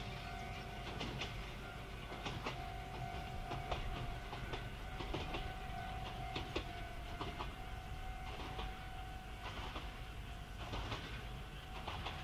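Kanbara Railway electric train running on jointed track: irregular wheel clicks over the rail joints above a steady humming tone.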